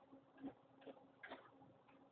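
Near silence: a faint steady hum with three faint short ticks.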